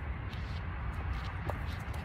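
Light footsteps of someone hopping on a concrete sidewalk, a few soft taps spread over the two seconds, over a steady low background rumble.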